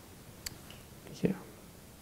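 A man's short, quiet spoken "yeah" a little over a second in, after a faint click about half a second in, over low room tone.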